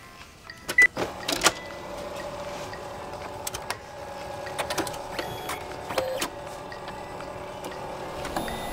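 A short beep and a few sharp clicks about a second in, then a printer running steadily with a whirring hum and occasional clicks as it feeds out a long strip of paper.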